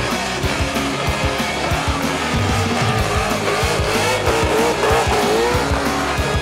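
A burnout car spinning its rear tyres in smoke, its engine at high revs and the tyres squealing with a wavering pitch, under a backing music track with a steady beat.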